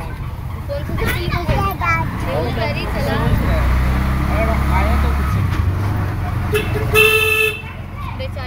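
Low engine and road rumble from a moving vehicle, with voices around it. A vehicle horn honks once for about half a second near the end, the loudest sound.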